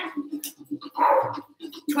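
A dog barking indoors, loudest about a second in.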